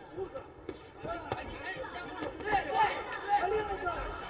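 A man's fast commentary, with two sharp thuds of kickboxing strikes landing, the first just under a second in and the second about half a second later.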